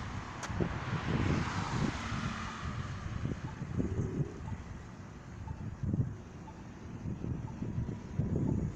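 Wind buffeting the microphone in irregular low rumbling gusts, with a hiss that fades away over the first few seconds.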